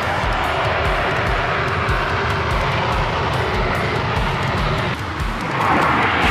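Eurofighter Typhoon jet engines running with a steady noise, mixed with rock background music that keeps a steady beat. A louder jet swells past near the end.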